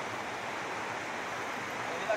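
River water running steadily over rocks, an even rushing noise.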